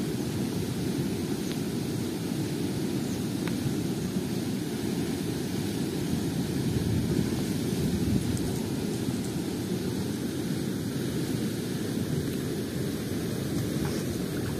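Fast river current rushing through a sluice gate: a steady, unbroken rush of water.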